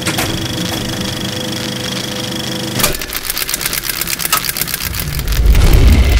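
Film projector sound effect: a steady motor hum, then a fast rattling clatter that starts suddenly about three seconds in, with a deep rumble swelling near the end.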